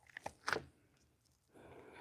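A few brief faint clicks and a soft knock from handling plastic mixing cups and a bucket during an epoxy pour, then near quiet.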